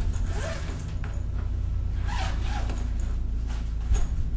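A zipper on a black soft-sided case being pulled open in two strokes, one about half a second in and a longer one around two seconds in, over a steady low hum.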